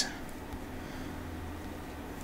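Quiet room tone: a steady low hum with faint hiss, and no distinct events.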